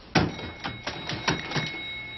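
Elevator buttons being pressed in quick succession, a rapid run of sharp clicks about five or six a second, with a thin steady high tone held underneath.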